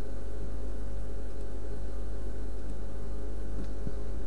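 Steady electrical hum with background hiss, the recording setup's own noise, with a faint click near the end.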